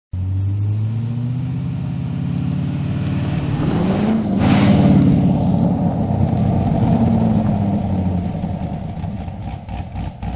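C6 Corvette Grand Sport's 6.2-litre V8 running as the car drives toward and past. The pitch rises as it accelerates about four seconds in, there is a rush of air as it passes, and then the sound drops in pitch and fades as it drives away.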